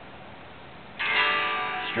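Open strings of a 2015 Gibson Les Paul Classic strummed once about a second in, after being muted, and left ringing as they slowly fade. This is the strum that the G-Force robot tuning system reads during its calibration mode.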